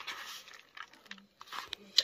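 Fingers squishing and rustling shredded mozzarella mixed with mayonnaise in a paper plate, quiet and sticky, with two brief low hums partway through and a click at the end.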